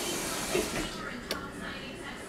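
A baby taking a spoonful of oat cereal, with a brief soft vocal sound about half a second in and a small click about a second later, over a steady faint hiss.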